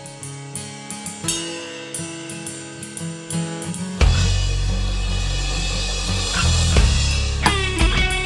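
Rock band recording: a quieter intro of held chords and regular drum hits swells, then the full band with drums and heavy bass comes in loudly about four seconds in. A lead line with bending notes enters near the end.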